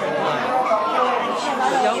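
Overlapping voices of several people talking at once: crowd chatter under a large tent.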